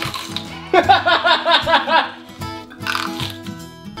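Background music with steady held notes. About a second in, a quick run of short rising-and-falling pitched notes lasts about a second.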